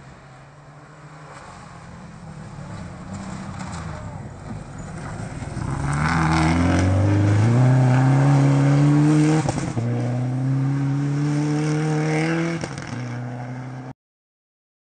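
Rally car on a gravel stage, its engine growing louder as it approaches, then revving hard and climbing in pitch as it slides through a hairpin with a spray of gravel. The engine note breaks off briefly about nine and a half seconds in, climbs again, then fades as the car drives away.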